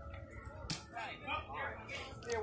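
Faint voices of several people talking at a distance, with a sharp knock about two-thirds of a second in and another near the end.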